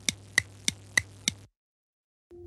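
A quick series of sharp ticks, about three a second, over a low hum, stopping about a second and a half in.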